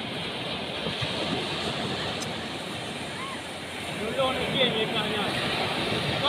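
Surf breaking steadily on a sandy beach. From about four seconds in, people's voices call out briefly over it.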